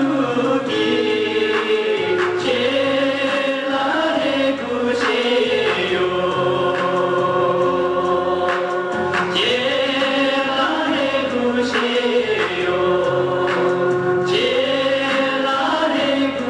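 Male voices singing together in a slow, chant-like Tibetan song, with long held notes in phrases of a few seconds.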